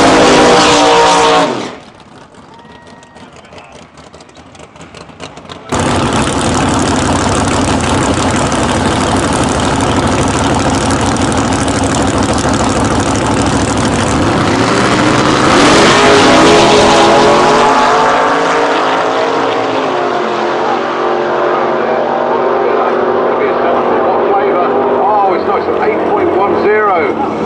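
V8 engine of an Outlaw Anglia drag car (Ford Anglia-bodied) revving hard during a tyre burnout. After a few quieter seconds, the loud engine sound comes back suddenly and runs on at high revs, with rising and falling pitch about two thirds of the way in.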